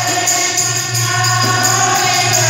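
A group of voices sings a devotional kirtan (bhajan) in chorus, accompanied by a dholak hand drum and a steady rhythm of jingling metal percussion.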